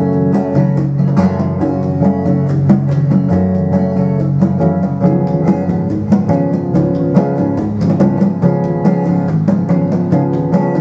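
Live band playing an instrumental intro: strummed acoustic guitar over electric bass and hand-played congas, with a steady, even beat.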